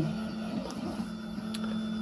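3D printer running with a steady low hum.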